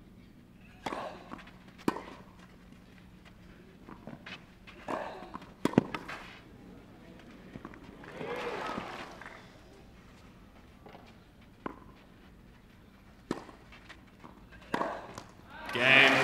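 Tennis rally on a clay court: a serve and the ball struck back and forth by racquets, sharp single hits a second or more apart, with a brief swell of voices about halfway through. The crowd starts cheering and applauding at the very end as the point is won.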